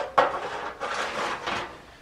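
A short knock followed by rustling handling noise that fades away over about a second and a half.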